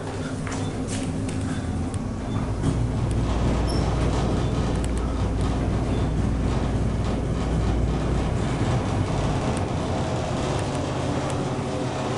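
Traction elevator cab travelling down: a steady low rumble of the ride that builds in the first second and eases near the end as the car slows, over the hum of the cab's ventilation fan. A few faint clicks.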